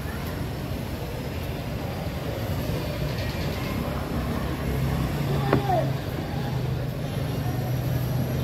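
An engine running steadily with a low hum, amid the background noise of an open-air market and faint voices.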